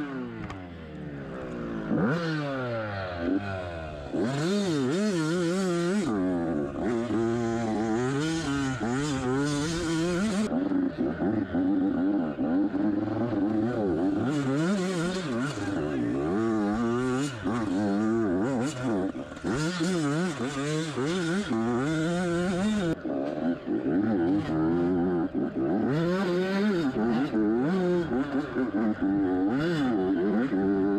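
Yamaha YZ85 two-stroke dirt bike engine, heard from on the bike, revving up and down hard as the throttle is worked on a rough woods trail. It is quieter for the first few seconds, then climbs into constant rapid rises and falls in pitch.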